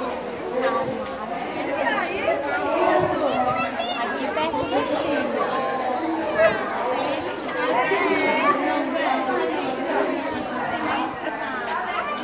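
Overlapping chatter of a group of small children and adults, with high children's voices rising and falling over the babble.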